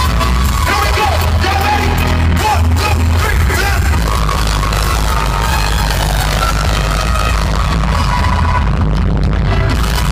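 Live hip-hop concert music through a PA system, loud and steady, with a heavy bass line.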